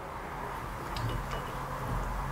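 Soft rustling of sliced raw onion being tipped from a glass bowl onto cut tomatoes and spread by hand, with a few faint light clicks.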